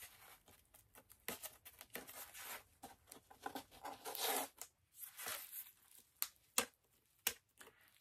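Packaging being torn and pulled off a graded comic book slab: intermittent soft tearing and rustling, with a few sharp clicks in the last two seconds.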